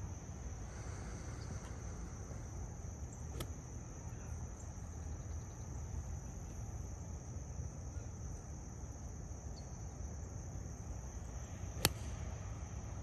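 Steady high-pitched trilling of insects, with a low rumble underneath. Just before the end comes one sharp crack: a golf club striking a ball off the tee.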